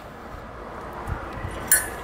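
Hand-handling noise of a steel bolt and split lock washer being fed into a steel tow-bar base plate, with a dull knock about a second in and a short, sharp metallic clink near the end.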